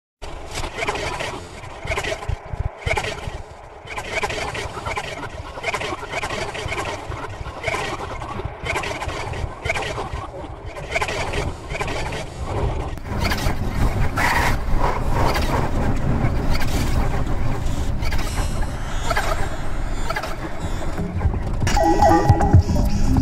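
Opening of an experimental electronic track: a dense, choppy collage of noisy, machine-like textures broken by brief sudden dropouts. About thirteen seconds in it opens up into a fuller, brighter sound and grows louder.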